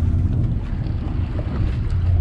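Charter fishing boat's engine running with a steady low hum, with wind buffeting the microphone.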